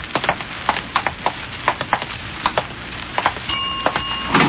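Radio-drama sound effects: footsteps of two people walking on a hard floor, irregular and overlapping. About three and a half seconds in, an elevator signal bell starts ringing a steady tone as the car arrives.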